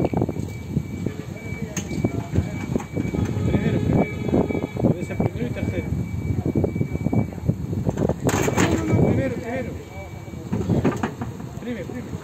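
Electric reach truck at work: a thin, steady high whine that stops about seven seconds in, then a short sharp noise a little after eight seconds. Voices are heard underneath.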